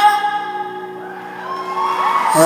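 Live singing with a band: a held, wavering sung note fades at the start, a short quieter lull follows, and a voice slides upward in pitch near the end.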